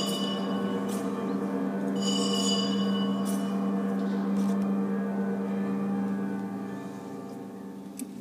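Church bells ringing at the elevation of the chalice after the consecration at Mass: a deep, sustained ringing tone, with brighter bell strikes just before the start and again about two seconds in, fading away over the last two seconds.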